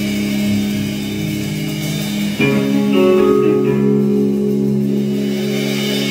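A band playing live, led by guitar: held notes that change to a new chord about two and a half seconds in.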